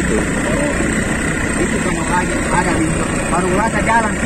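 The motorcycle engine of a bentor, a motorized pedicab, running steadily while riding, heard from the passenger seat with road noise. Faint voices are heard in the second half.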